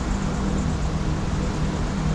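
Steady low rumbling ambient drone with a few faint held tones over it, even throughout.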